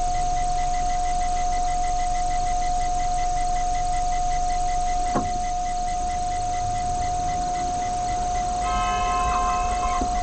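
A loud, steady, high-pitched tone, with a faint fast ticking of about three a second behind it. A short knock sounds about halfway through, and several further steady tones join in near the end.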